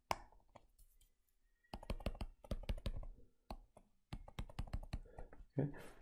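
Stylus pen tapping and clicking on a tablet screen while handwriting. Light, irregular clicks come in a quick run from about two seconds in.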